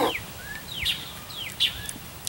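Small songbirds chirping: a scatter of short, high, downward-sliding chirps. At the very start, a brief slurp as beer foam is sipped from a glass.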